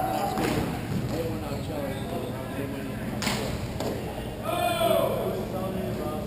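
Hockey players' sticks striking sharply twice, about half a second in and about three seconds in, with indistinct shouting from players around four and a half seconds in, all echoing in a large indoor arena.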